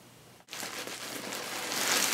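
A clear plastic packaging bag crinkling as it is handled. It starts suddenly about half a second in and grows louder.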